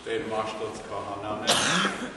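A man talking, then a single short, loud cough about one and a half seconds in.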